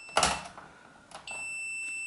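A click, then about a second in a multimeter's continuity buzzer gives a steady high beep across the electric shower's thermal cut-out: continuity is there, so the cut-out has not tripped.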